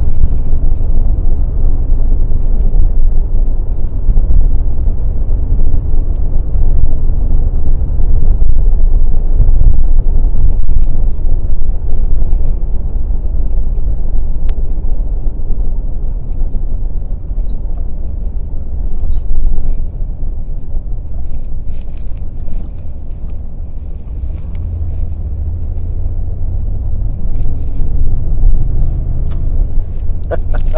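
Low, steady rumble of a car's engine and tyres on the road while driving, heard from inside the vehicle. It eases off somewhat a little past the middle and builds again near the end.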